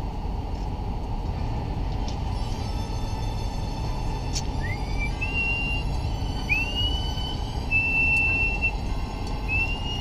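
Steady low rumble inside a car's cabin crawling in stop-and-go traffic. From about halfway, four or five short, thin, high squeals, each sliding up and then holding for a moment.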